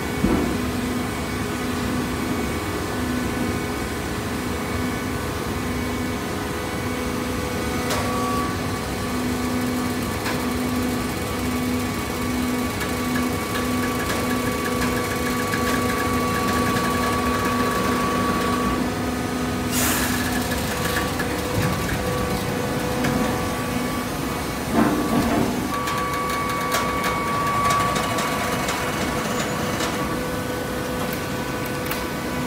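Horizontal hydraulic baler running with a steady machine hum, a knock right at the start. A sharp clack comes about twenty seconds in, after which the hum changes, and a few knocks follow about twenty-five seconds in.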